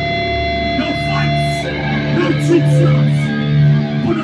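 Amplified electric guitars and bass of a live hardcore band holding long ringing notes that shift about a second and a half in, with the low end swelling. Brief shouted voices are heard over them.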